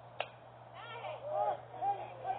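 A bat strikes the pitched ball with one sharp crack. About a second later several voices start shouting and cheering, growing louder.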